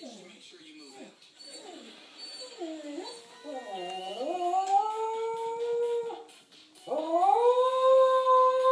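Shetland sheepdog howling after its owner has left: wavering, dipping notes build into a long howl that rises and then holds steady. After a short break a second, louder howl rises and holds near the end.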